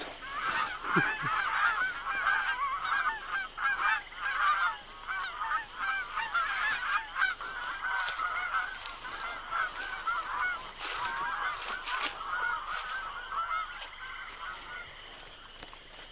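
A flock of birds calling over one another, many short overlapping calls, thinning out near the end.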